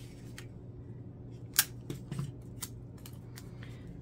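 Hands working a folded paper index card and clear tape: a few short, sharp clicks and crinkles, the loudest about one and a half seconds in.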